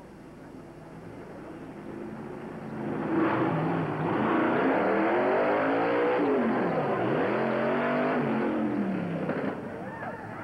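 Fire-department drill racing car's engine revving hard as it runs down the track, growing loud about three seconds in. Its pitch swoops down and back up around the middle, then the sound drops away shortly before the end.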